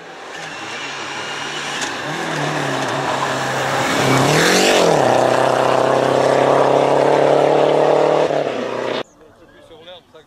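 Rally car engine at high revs, growing louder as it approaches; the revs dip and climb again about four seconds in as it takes the bend, then it pulls away on a loud, steady high note. The sound cuts off suddenly near the end.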